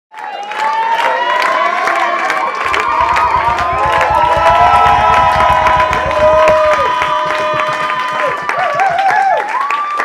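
Concert audience cheering and shouting loudly, calling for an encore. A rapid low thumping runs under the cheers for a few seconds in the middle.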